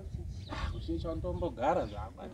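A person speaking in raised, animated bursts, over a steady low rumble of wind on the microphone.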